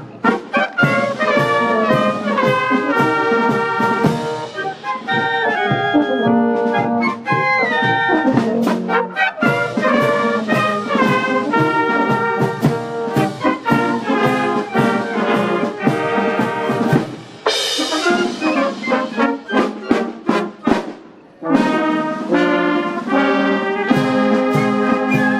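A village wind band of flutes, clarinets, trumpets and tubas playing in unison. The music has a steady beat and thins briefly twice in the last third.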